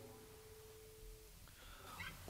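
Near silence: a pause in the song, with a faint held tone dying away a little over a second in.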